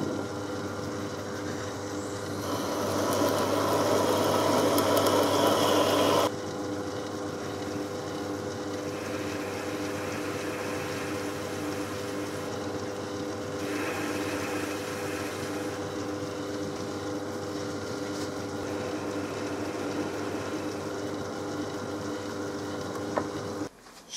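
Myford ML7 lathe running with a steady hum, a twist drill cutting into the spinning aluminium part for about four seconds near the start, louder and hissier while it cuts. After that the lathe spins on with no cut.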